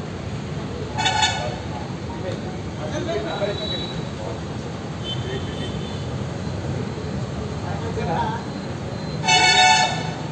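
A horn toots twice: a short blast about a second in and a longer, louder one near the end, over indistinct background voices and a steady low rumble.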